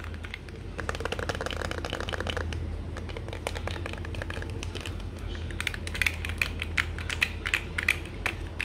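Fingernails and fingertips tapping quickly on a hard perforated object as a string of light clicks. There is a dense run of taps about a second in and a faster, louder flurry in the second half.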